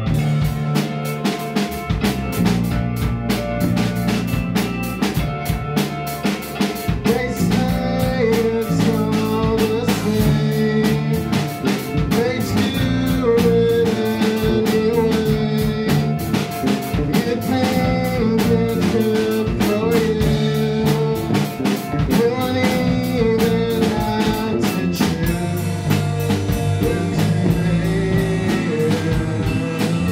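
Live instrumental band playing: a Nord keyboard carries a wavering melody over electric bass, with a drum kit keeping a steady, busy beat of drum and cymbal hits.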